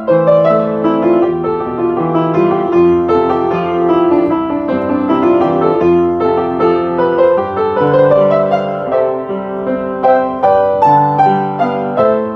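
A Kreutzer Toku K3 handmade upright piano, about forty years old, being played: a continuous run of notes with several sounding together over held lower notes, each note ringing on.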